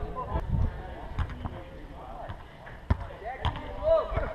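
A footvolley ball being struck during a rally: a few dull thuds of the ball off players' feet and bodies, the sharpest about three seconds in, under faint voices.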